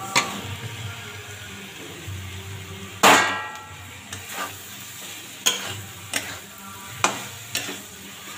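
Metal spatula and steel bowl clanking against a steel kadhai as chopped green beans and potato are tipped into hot masala and stirred, over a low sizzle. One loud ringing clang about three seconds in, then sharp clinks every second or so.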